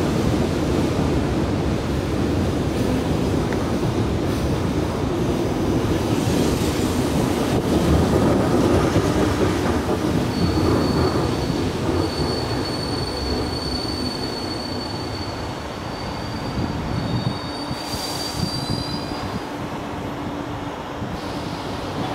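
Korail 341000-series electric multiple unit running into the station and slowing, its wheels rumbling on the rails. About ten seconds in, a high steady squeal joins and holds for some eight seconds as it brakes. The rumble eases off after the middle, with a brief hiss near the end.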